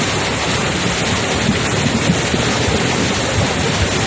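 Flash-flood water rushing across a road: a loud, steady wash of water noise with no breaks.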